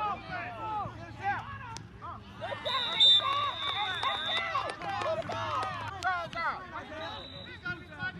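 Many voices shouting and calling over each other during a football play, with a steady high tone about three seconds in that lasts under two seconds and returns near the end.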